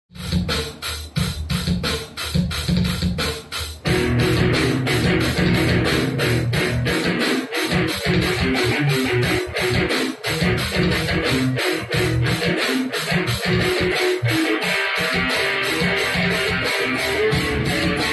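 Electric guitar music over a steady fast beat: choppy for the first few seconds, then fuller and continuous from about four seconds in.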